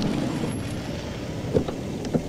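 Hyundai hatchback's engine running at idle, then a single click about one and a half seconds in as a car door is opened.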